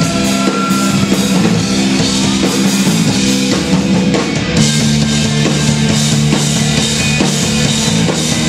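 Live rock band playing loudly: distorted electric guitars and bass over a drum kit with crashing cymbals. About halfway through the music moves to a new held chord and the cymbals get brighter.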